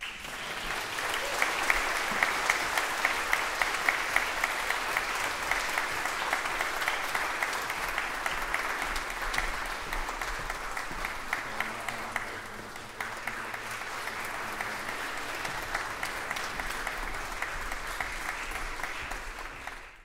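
Audience applauding, a dense steady clapping that eases slightly about twelve seconds in and then picks up again.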